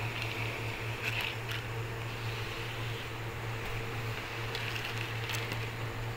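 Faint clicks and light scraping of hermit crab shells being handled in a plastic basin, a few around a second in and again near the end, over a steady low hum.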